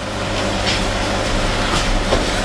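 Steady fan-like noise with a low hum, and two faint light clicks.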